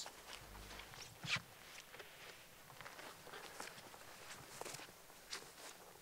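Faint footsteps on frost-covered grass: a few soft steps at uneven intervals.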